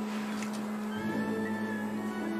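Background film score of sustained, held notes, with a new lower note coming in about halfway through.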